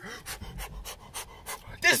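A man panting in rapid, short breaths, several a second. He breaks into speech near the end.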